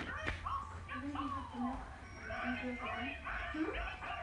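Indistinct voice sounds whose pitch slides up and down, with a word near the end.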